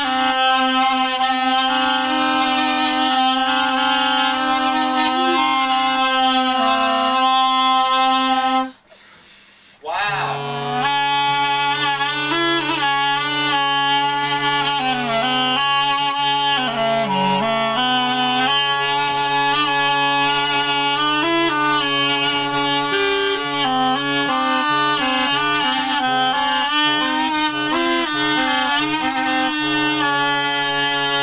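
A reproduction Roman tibia from Pompeii, a reed-blown double pipe, played with both pipes sounding at once: one pipe holds a steady low note while the other plays a moving melody. The playing stops for about a second and a half just under nine seconds in, then resumes on a lower held note.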